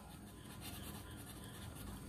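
Faint scratching of a marker pen writing on paper.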